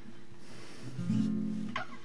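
Acoustic guitar being played: a few soft plucked notes, then a chord ringing out from about a second in, and another stroke near the end.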